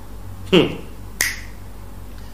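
A man's short "hum" with falling pitch, followed a moment later by a single sharp click.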